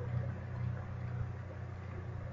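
Steady low electrical hum with a faint hiss over it, unchanging throughout.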